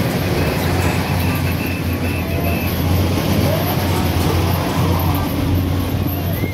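Fairground din: a steady low machine hum from a running carnival spinning ride, with music and voices mixed in.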